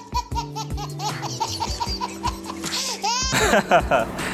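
A baby laughing in quick repeated giggles, about five a second, over background music with steady held notes. One longer laugh comes about three seconds in.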